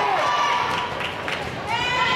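Volleyball rally in a gym: players and spectators calling out, with sneakers moving on the court floor and a few sharp knocks, likely the ball being played, about a second in.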